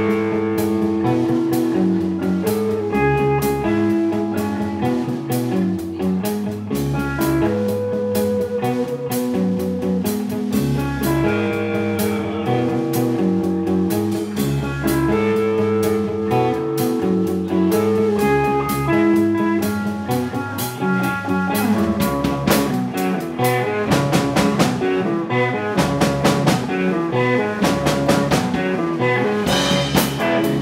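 Live rock band playing: electric guitars, bass guitar and drum kit. The drumming gets busier about two-thirds of the way through.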